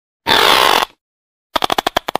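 An iguana's hiss: one short, harsh burst of breathy noise about half a second long. Near the end comes a fast run of sharp clicks.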